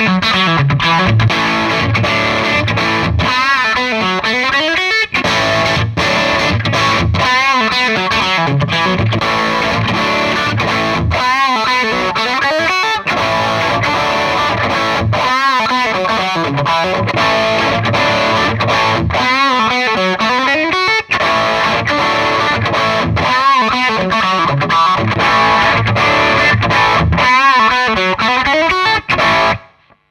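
Electric guitar played through a Danelectro Billionaire Pride of Texas overdrive pedal, a distorted riff repeated about every four seconds. First it goes through a Yerasov BlackSpace tube amp pushed hard with the pedal's gain at minimum. Later it goes through an Orange Tiny Terror with the pedal's gain at maximum, so the pedal does the distorting. The playing stops abruptly near the end.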